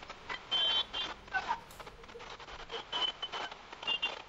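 Street traffic noise with scattered knocks and short, high electronic beeps, the beeps coming in a cluster about half a second in and again near the end.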